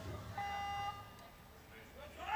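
A single electronic beep with a steady pitch, lasting about half a second.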